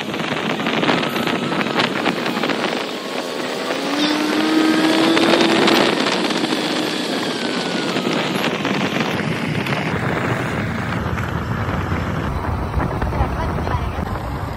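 Steady rush of wind on the microphone and engine and road noise from a moving vehicle on a road. In the middle a pitched tone with overtones rises slowly, and from about two-thirds of the way through a deeper rumble joins in.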